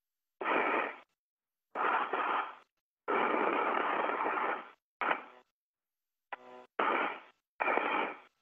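Radio communication loop keying open and shut over and over: about seven short bursts of hiss with a faint hum, each starting and cutting off abruptly, with dead silence between them and no words heard.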